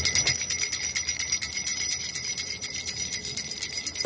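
A small hand-held ring of metal jingle bells shaken steadily, giving a continuous high, bright jingling with no low notes.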